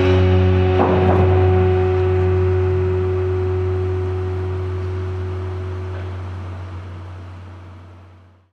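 A live band's closing low note, held and slowly fading out over several seconds, with a short noisy burst about a second in.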